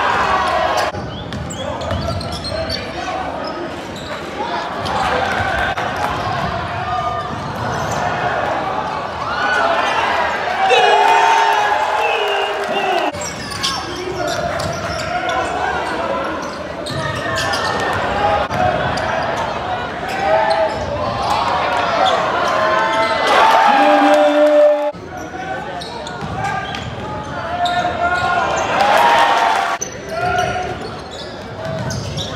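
Game sound heard from the stands at a college basketball game in a reverberant gym: crowd voices and a basketball dribbling on the court. A held tone sounds a little before three quarters of the way through and cuts off abruptly.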